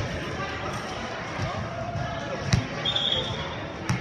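Sharp volleyball impacts echoing in a gym hall: one about two and a half seconds in and another near the end, over players' chatter. A brief high tone sounds around three seconds.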